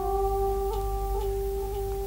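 Instrumental accompaniment of a cải lương scene: one long, steady held note with small ornaments.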